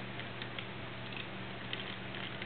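Quiet room tone: a steady low hum under faint hiss, with a few faint soft ticks.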